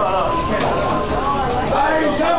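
Several people talking at once, their voices overlapping into indistinct chatter with no clear words.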